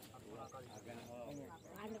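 Indistinct voices of several people talking.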